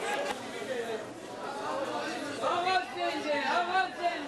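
Chatter of several people talking at once, with a nearer voice coming through more clearly in the second half.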